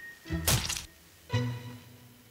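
A sharp, heavy blow sound effect about half a second in, the last of a quick series of strikes in a staged knife attack. It is followed by a low, pitched music hit that comes back about once a second.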